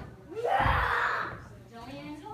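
A person's voice: one short, breathy exclamation starting about a third of a second in and lasting about a second, rising in pitch at its start.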